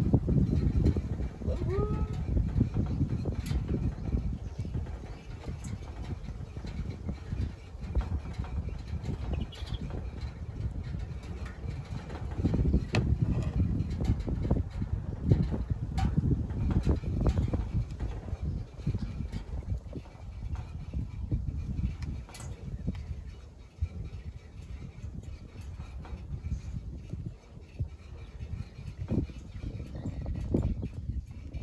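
Wind buffeting the microphone: a low, uneven rumble, louder in the first half, with scattered light clicks and knocks and a brief squeak about two seconds in.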